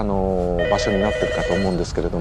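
A person's voice, with a telephone's electronic ring lasting about a second that starts about half a second in.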